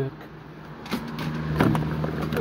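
Handling noise: a few knocks and rubbing as things are moved about, over a low steady hum that starts about a second in.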